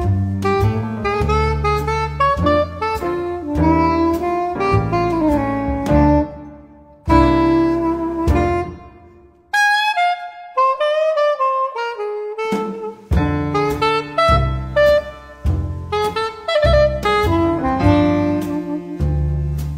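Small jazz group of saxophone, piano and bass: the saxophone plays the melody over piano chords and a bass line. About ten seconds in, the piano and bass drop out and the saxophone plays a short phrase alone, and the band comes back in about three seconds later.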